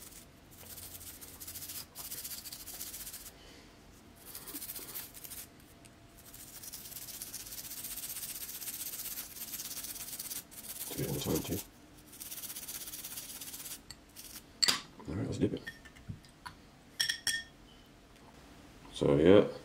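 Toothbrush bristles scrubbing toothpaste over a gold grill: a hissy rasping brushing in runs of strokes, the longest lasting about four seconds from the middle on. A few short vocal sounds break in around two-thirds of the way through, and a few small clicks come near the end.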